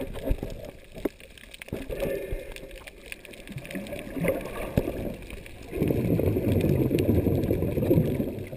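Muffled water noise picked up through an underwater camera housing: sloshing and gurgling as the camera moves at and below the surface, with scattered sharp clicks. It grows to a denser, louder rush about six seconds in.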